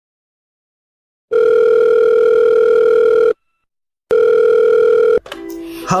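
Telephone ringback tone, the ringing a caller hears: two long beeps of one steady buzzy tone. The first lasts about two seconds; the second is cut short after about a second as the call is answered.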